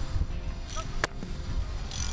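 Wind rumbling on the microphone over background music, with one sharp slap about a second in as the football is caught by the kneeling placeholder on a field-goal try.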